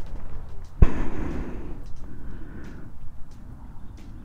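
A single sharp knock about a second in, followed by rustling and handling noise that fades away.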